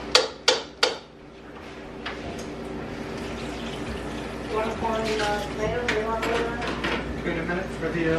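Three sharp plastic clicks in quick succession as a lid is pressed and snapped onto a plastic blender jar.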